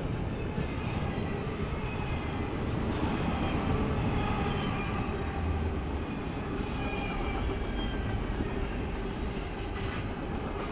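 Double-stack intermodal well cars rolling steadily past: a continuous rumble of steel wheels on the rails, with thin high wheel squeals drifting in pitch above it.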